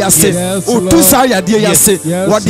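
A man singing a short repeated phrase rhythmically into a handheld microphone, in a chant-like delivery with held notes.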